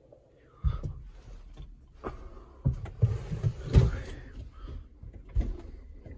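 Irregular knocks and thumps of someone climbing into a tractor cab and settling at the controls, with rustling handling noise between the knocks; the loudest thump comes just before the middle.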